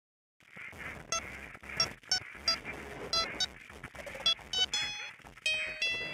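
Song intro: short, irregularly spaced electronic beeps over a steady hiss, giving way to longer held tones near the end.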